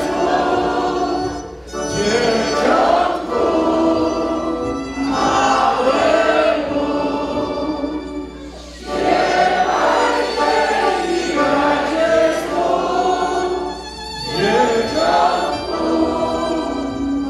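A mixed group of men's and women's voices singing a Polish Christmas carol (kolęda) together, phrase by phrase, with brief breaks between phrases about 2, 8 and 14 seconds in.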